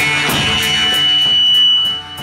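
Live jam of amplified jaw harps over a steady low drone, with drum kit cymbal ticks keeping a regular beat. A thin, steady high whistling tone is held through most of it. The music drops in loudness right at the end.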